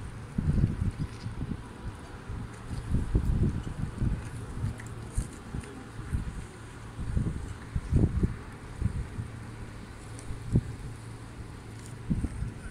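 Wind blowing across a phone's microphone, rumbling in irregular gusts over a faint steady hiss.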